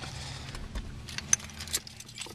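A quick scatter of light metallic clicks and jingles over a low steady hum inside a car.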